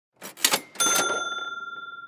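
Intro sound effect: a short rattle of clicks, then a bell ding just under a second in that rings on and slowly fades.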